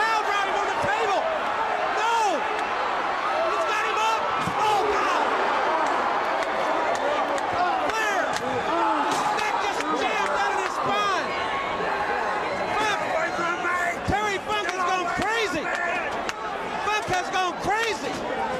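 Arena crowd of many overlapping voices shouting and screaming, with a few sharp slams of a wrestling brawl scattered through.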